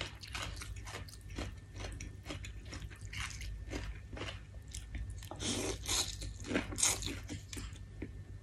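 Close-up eating sounds: wet chewing and mouth clicks on rice noodles in curry broth, with louder slurps of noodles a little past the middle and again near the end.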